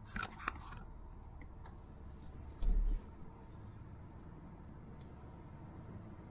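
Low, steady rumble of a car driving across a grass field, heard from inside the cabin. A few clicks of the camera being handled come right at the start, and one short, heavy low thump falls a little before the midpoint.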